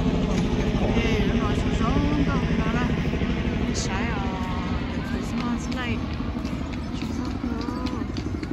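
Low, steady rumble of vehicle engines running nearby, with people's voices in the background.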